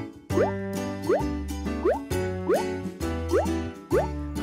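Playful children's background music: a plodding bass line with a short rising swoop tone repeating about every three-quarters of a second.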